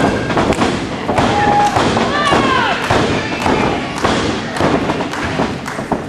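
Wrestling ring canvas thudding again and again as two wrestlers grapple and stamp their feet on it, with voices shouting over the thuds.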